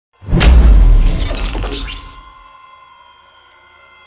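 Cinematic sound-design impact for a logo reveal: a sudden deep bass boom with a glassy shattering crash, dying away over about two seconds into a faint ringing drone of several steady tones.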